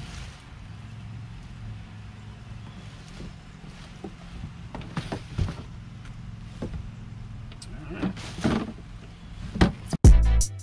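A hard plastic motorcycle saddlebag being handled over its cardboard box: several brief rustles and light knocks, mostly in the second half, over a low steady hum.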